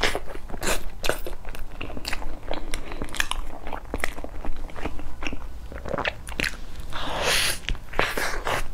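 Close-miked biting and chewing of a soft filled cake: a string of quick wet mouth clicks and smacks, with a longer breathy rustle near the end as another bite is taken.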